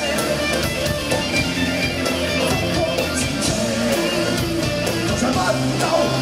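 Live rock band playing an instrumental passage: distorted electric guitars and bass over drums, with regular cymbal and snare hits.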